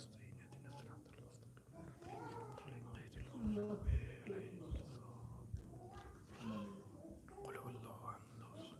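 Soft, murmured recitation of Quranic verses under the breath, close to a microphone, over a steady low hum. A brief low thump about four seconds in.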